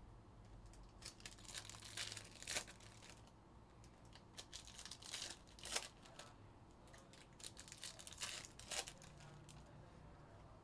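Foil trading-card packs being torn open and crinkled by hand, in three bursts of crackling a few seconds apart.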